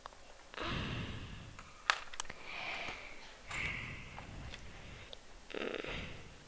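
Quiet handling of a plastic rubber-band loom: a plastic hook working rubber bands on the pegs, with soft rustling swells and two sharp little clicks about two seconds in. A short 'hmm' near the end.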